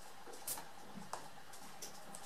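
Faint clicks of plastic Blu-ray cases being handled, three light ticks over quiet room tone.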